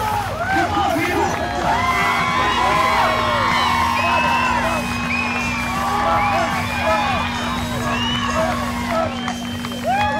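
Spectator crowd cheering and whooping, many voices shouting over one another, with a steady low hum underneath.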